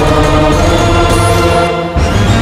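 Dramatic film background score of held, layered tones, with a choir-like chanting quality. It dips briefly just before the end, then a new section comes in suddenly.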